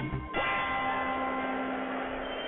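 The rock intro music breaks off and a single bell is struck about a third of a second in. It rings on with several steady tones, slowly fading.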